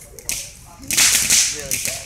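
Ground fountain firework going off in bursts: a sharp crack about a second in, followed by a hissing spray of sparks that fades, and another crack right at the end.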